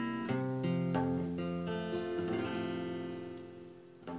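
Nylon-string classical guitar strumming open chords: a few strums in the first two seconds, then the last chord rings out and slowly fades.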